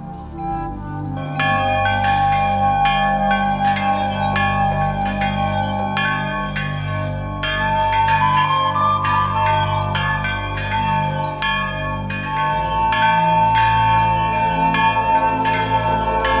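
Two church bells in a small bell-cote rung by hand with ropes. The strikes come quickly and unevenly, about twice a second, beginning about a second in, and each note rings on under the next.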